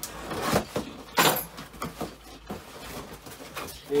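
Hands rummaging in a cardboard parcel box, rustling the box and its packing, with two louder rustles about half a second and a second in and smaller ones after.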